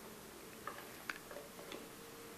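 A few faint, short clicks, about four of them in the middle of the stretch, over a faint steady hum.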